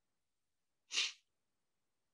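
A single short intake of breath by the narrator, about halfway through an otherwise silent pause in the narration.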